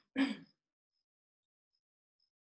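A woman clearing her throat once, briefly, just after the start.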